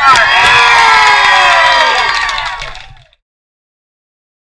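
A crowd of teenagers cheering and screaming, many voices overlapping, fading out about three seconds in.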